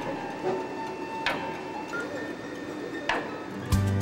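Soft background music with a few sustained tones, with two sharp clicks, about a second in and about three seconds in.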